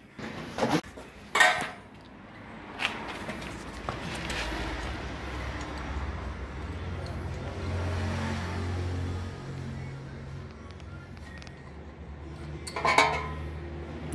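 Metal clinks of a bolt and tools as the steel cutter knife under a small pellet mill's die is unbolted by hand: a few sharp clinks in the first three seconds and a cluster near the end, with a low steady hum underneath.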